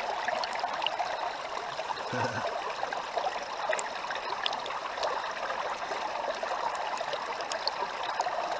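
River water flowing through a gold sluice box, heard with the camera held underwater in the sluice: a steady rush of water with small scattered clicks.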